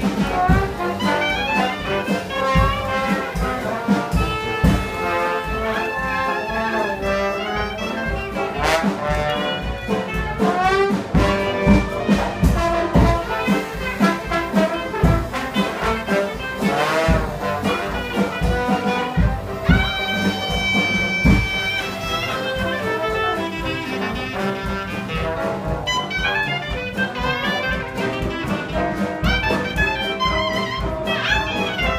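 Live traditional jazz band playing an up-tempo number: brass horns over a rhythm section of banjo, piano and upright bass keeping a steady beat, with a few long held notes about two-thirds of the way through.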